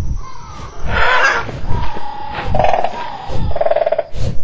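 A sound-effect dragon roar about a second in, followed by rattling growls, over low rumbling thuds.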